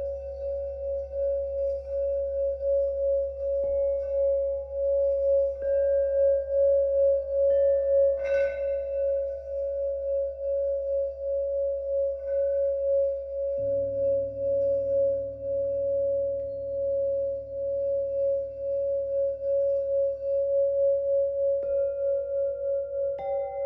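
Antique Mani singing bowl rimmed with a wooden stick, singing one steady high tone that swells and fades in a pulse. Other bowls are struck every few seconds with a padded mallet, each adding a new ringing note over it, and a deeper tone joins about halfway through.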